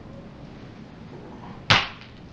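A single short, sharp swish about three-quarters of the way through as a sequined tulle tutu skirt is flung aside. Otherwise quiet room tone.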